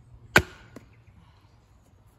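A heavy wooden club strikes the back of a billhook blade once, hard, driving the blade down into a log to cleave it. A much lighter knock follows a moment later.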